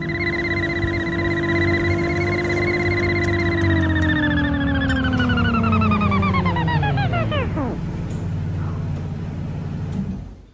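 A Jeep Wrangler runs with a loud whine. The whine holds steady, then falls in pitch and dies away about eight seconds in. The low engine note carries on and cuts off sharply near the end as the engine is switched off.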